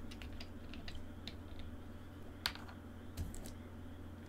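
Irregular clicks of a computer keyboard being typed on, with one louder click about two and a half seconds in, over a low steady hum.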